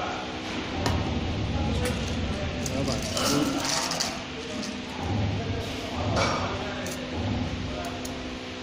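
Stainless steel test cups and small steel balls of a washing fastness tester clinking and knocking as they are handled: a string of sharp metal clinks over a steady hum.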